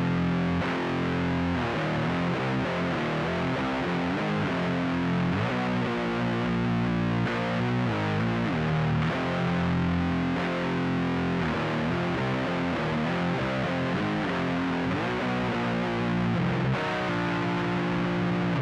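Distorted electric guitar in C standard tuning playing a slow, heavy chord riff. It rings out sustained two-note chords and slides between them several times.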